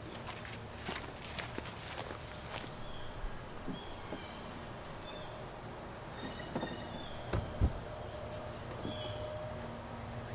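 Soft thumps and rustling from a trifold foam mattress being unfolded, with two thuds close together about seven and a half seconds in, over a steady high drone of insects.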